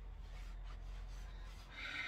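Quiet room tone with a steady low hum and faint rustling of a loose crepe dress as the wearer turns. A short breath comes near the end.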